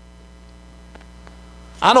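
Steady low electrical hum in a pause between spoken phrases, then a man's voice starts speaking near the end.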